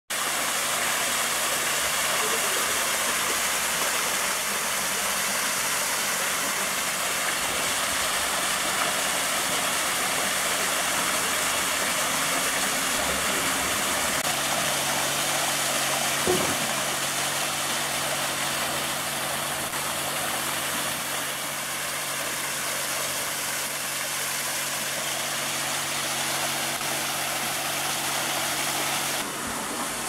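Artificial sheet waterfall pouring from a wall into a swimming pool: a steady splashing hiss of falling water, with a faint low hum underneath.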